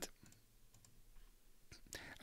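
Near silence: quiet room tone with a few faint, short clicks from a computer being worked.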